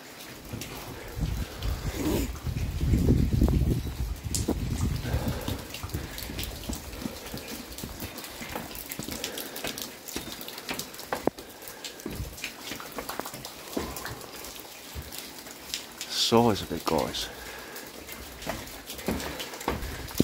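Footsteps and scattered clanks and knocks on steel scaffolding stairs and boards during a climb, with wind rumbling on the microphone about two to four seconds in.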